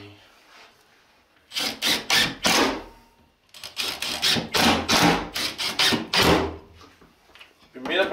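Cordless drill/driver driving screws through a metal shelf bracket into an OSB wall, in a series of short bursts: a few in the second and a half after the start, then more from about three and a half seconds in.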